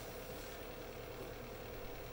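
Faint, steady fan hum with a light whine, from cooling fans running under a heavy load of about 1,100 watts: a Bluetti AC200 power station driving a space heater at full.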